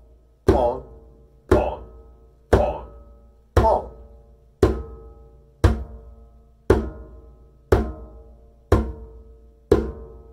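Djembe bass tones struck one at a time with the right hand in the middle of the head, as steady quarter notes, about one stroke a second. Each stroke is a deep thud with a short ring that fades before the next.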